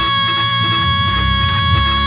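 A gospel singer holds one long, high sung note into a handheld microphone, steady in pitch, over a live band with bass and guitar.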